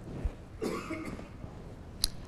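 A brief, faint human vocal sound about half a second in, over quiet room tone.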